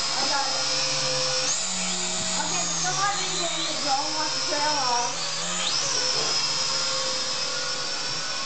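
Snaptain S5C quadcopter's small motors and propellers whining in flight, the pitch jumping up about a second and a half in and dropping back a couple of times as the throttle changes.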